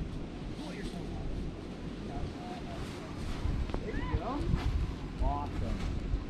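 Wind buffeting the microphone with a low rumble while riding an open chairlift, and a few faint short high chirps about two, four and five seconds in.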